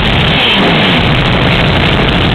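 Black metal band playing live, a loud, dense wall of heavily distorted sound with no breaks.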